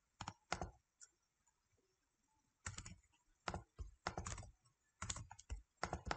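Faint typing on a computer keyboard: a few keystrokes, a pause of about a second and a half, then quick runs of keys through the rest.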